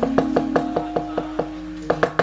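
Rapid, even knocking of the dalang's cempala and keprak against the wayang puppet box, about six strikes a second, over a steady low ringing tone from the gamelan.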